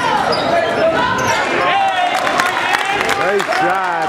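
A basketball bouncing repeatedly on a hardwood gym floor during play, with voices calling out over it.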